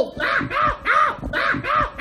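A bird calling harshly over and over, about five caws in quick, even succession, each rising and falling in pitch.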